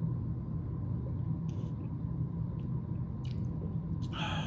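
A steady low electrical hum with room tone, broken by two faint, brief soft sounds: one about a second and a half in and one a little after three seconds.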